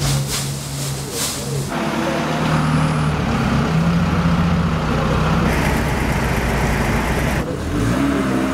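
Engine of a compact skid-steer loader running and revving as it works, its pitch rising and falling. The sound changes abruptly about two seconds in and cuts off shortly before the end.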